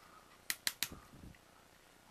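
Plastic parts of a Transformers Sentinel Prime figure clicking three times in quick succession about half a second in as its arm and fist are repositioned, followed by faint handling rustle.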